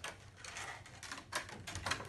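Clear plastic packaging bag crinkling and rustling as it is handled, with a few sharper crackles, two of them close together in the second half.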